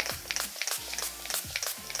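Handheld spray bottle squirting rubbing alcohol over a bed, a string of quick short bursts.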